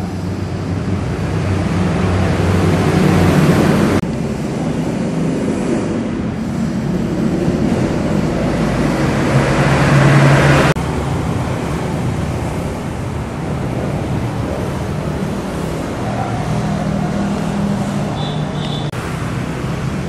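Road traffic running past outside: a steady wash of vehicle engine and tyre noise with a low engine hum, swelling as vehicles pass and breaking off abruptly twice, at about four seconds and again at about ten and a half.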